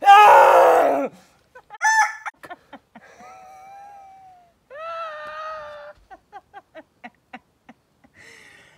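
A man yells in pain right after a wax strip is torn off his skin, loud and strained for about a second. It breaks into laughter: drawn-out laughing wails, then a run of short laughs at about four a second.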